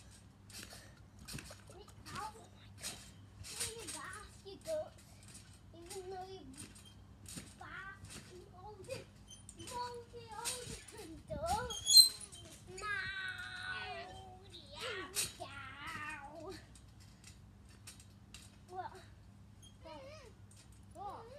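Boys' voices in short, scattered, indistinct bursts, with a sharp loud cry about twelve seconds in and a high, drawn-out vocal sound just after it.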